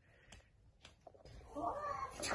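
Quiet, broken by a couple of faint clicks, then about a second and a half in a meow-like call with a bending pitch that runs to the end.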